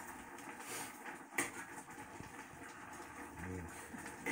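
Pot of ramen noodles and diced tomatoes simmering on the stove with a faint boiling, sizzling sound, and a single sharp click about a second and a half in.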